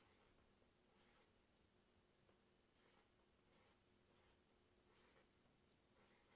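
Very faint, short scratches of a marker pen drawing on paper: a stroke roughly every second, otherwise near silence.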